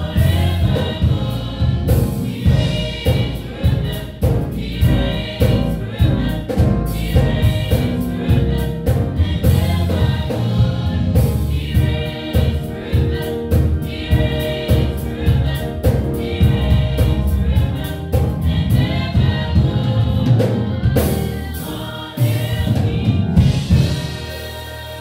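A gospel praise team singing together through handheld microphones, over a steady beat of instrumental accompaniment. The music dips briefly near the end.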